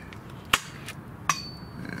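Sharp clicks of a small razor blade and hand tools being picked up and handled on a particle-board worktable: one about half a second in and another just over a second in, with a fainter tap between.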